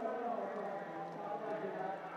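Ballpark crowd noise: many fans' voices chanting and cheering together at a steady level, with rhythmic clapping or tapping mixed in.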